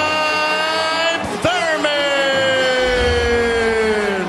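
A boxing ring announcer's long, drawn-out call of the winner's name, announcing him the victor. It comes in two held notes, the second stretched out for about three seconds and slowly falling in pitch.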